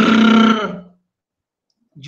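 A man's voice imitating a car engine straining in second gear with the accelerator pressed hard: one steady, held drone about a second long, dropping slightly in pitch as it ends.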